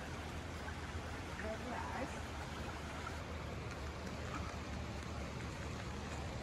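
Steady rush of the River Derwent's shallow water running over its stony bed.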